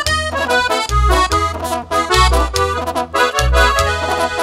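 Norteño band playing an instrumental break with no singing: the accordion carries quick runs of notes over repeated bass notes from tubas and upright bass.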